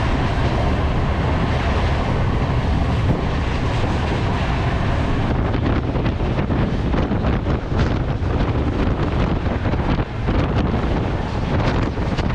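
Express train running at high speed, about 127 km/h, heard from inside a passenger coach: a loud, steady rumble of wheels on the rails with rushing air. Many short clicks and rattles join in from about five seconds in.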